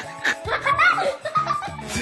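People laughing over background music with steady held notes.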